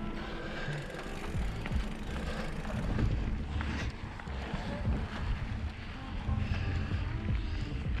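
Background music over mountain bike ride noise: wind rumbling on the handlebar camera's microphone, with frequent knocks and rattles as the hardtail rolls over a rocky dirt trail.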